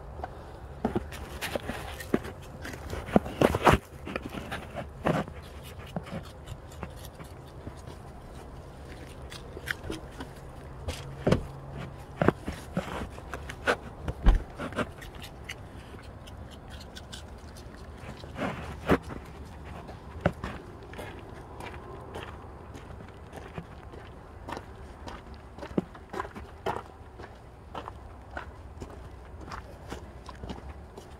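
Footsteps with scattered short knocks, clicks and scrapes on grass and leaf litter, the sharpest knocks a few seconds in and again about halfway, over a steady low hum.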